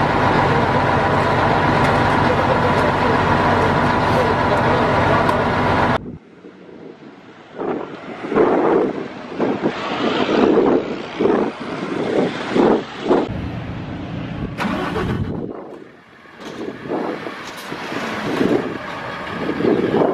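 A heavy truck's engine running loud and steady for about six seconds, then stopping suddenly; after that, men's voices talking and calling outdoors, with vehicle noise underneath.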